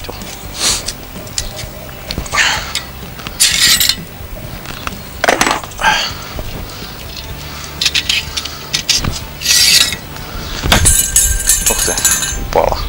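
Steel rotisserie spit and its prong forks being handled and fitted for a rabbit: scattered metal clicks and clinks, with a few brief scraping sounds.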